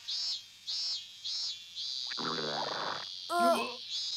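Cicadas chirring: a high buzz in short pulses about every half second, then running on steadily. About two seconds in there is a low, drawn-out groaning voice, and near the end a brief vocal sound.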